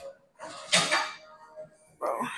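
A short, sharp noisy burst about a second in, as a woman crunches up during an abs exercise on a gym mat.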